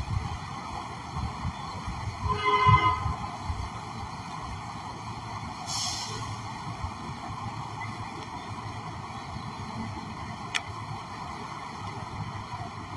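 Fountain water falling from a row of spouts into a pool, a steady splashing rush, over city street traffic. A brief loud pitched tone sounds about two and a half seconds in, a short high squeal around six seconds, and a sharp click near the end.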